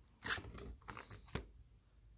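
Plastic binder page of sleeved trading cards being turned by hand: a crinkling rustle lasting about a second, ending in a sharp click.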